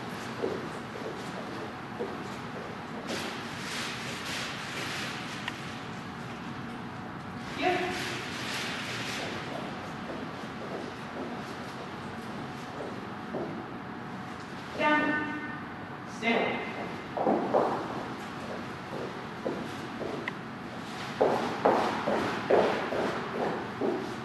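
A man giving a few short, spoken commands to a dog working at heel, several seconds apart, in a large hall.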